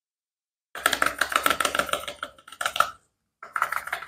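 Crinkly wrapper of a bar of soap being torn and peeled open by gloved hands: a long run of dense crackling about a second in, then two shorter bursts of crinkling.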